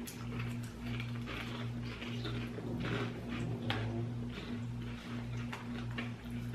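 People chewing kettle corn with mouths near the microphone: soft, irregular crunching, quiet throughout, over a steady low hum.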